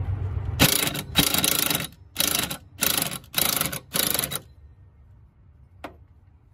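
Cordless impact wrench hammering on a strut top-mount nut, driving it down on a coilover. There is one long burst, then four short bursts about half a second apart.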